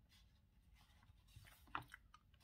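Near silence with faint scratching of a felt-tip marker against the paper of a word-search book, and one short sharp click near the end.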